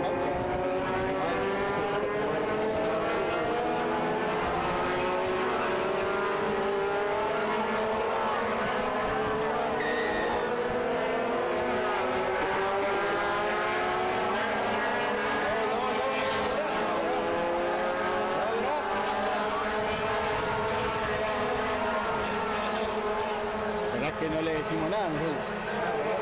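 An engine droning steadily, its pitch slowly rising and falling.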